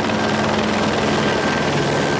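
Steady helicopter noise: a loud, even rush with a low hum underneath.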